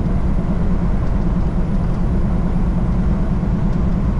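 Freightliner Cascadia semi truck cruising at highway speed, heard from inside the cab: a steady low diesel engine drone mixed with tyre and road noise.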